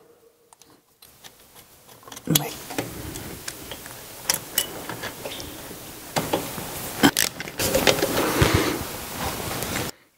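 Small metal clicks and taps of a fitting and bolts being handled and started by hand on a turbocharger housing, with rustling, growing louder from about six seconds in.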